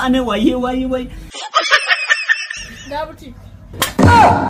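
A man speaks for about a second. Then a short burst of high-pitched squeaky chirping calls follows, with the room's background noise cut away beneath it, as an edited-in sound effect does.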